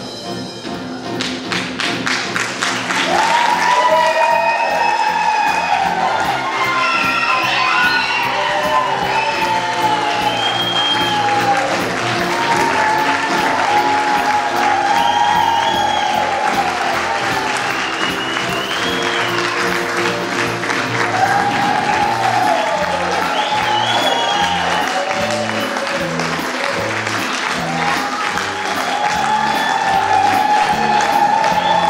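Music plays through a hall PA while the audience applauds and cheers. The clapping and cheering swell over the first few seconds, then carry on under the music.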